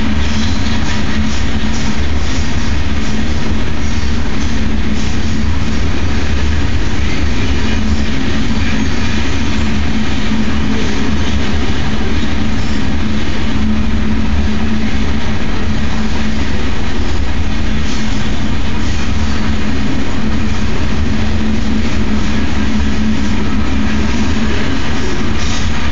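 Freight train of log-loaded flatcars rolling past close by: a steady, loud rumble of steel wheels on the rails that does not let up.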